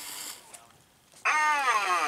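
Animatronic vampire Halloween figure's recorded voice through its built-in speaker: a long, falling 'ahh' that starts a little over a second in, opening its 'children of the night' line. A brief scuffing of hands on the rubber mask comes near the start.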